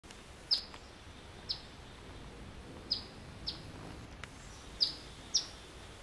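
A female phoebe gives six sharp alarm chips, about a second apart. Each chip is a short note that drops quickly in pitch. She is upset at an intruder looking at the chicks in her nest.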